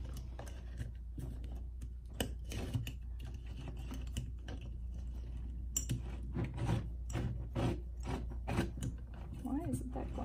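Irregular small clicks and taps of a metal mason-jar lid with a chrome soap pump being handled and fitted on a glass jar, over a steady low hum.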